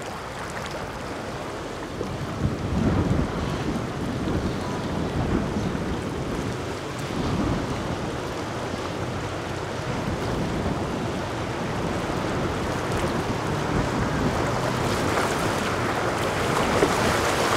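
A motor yacht running past at speed: a low engine rumble that swells and fades, with the rushing water of its wake and wind buffeting the microphone. It grows louder about two seconds in.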